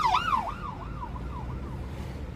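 Emergency vehicle siren in a fast yelp, its pitch rising and falling about three times a second and fading away, heard from inside a moving car over the low hum of road noise.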